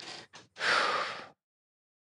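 A person breathing into a close microphone: a few short breathy puffs, then one longer unvoiced breath, like a gasp or heavy exhale, that stops about halfway through.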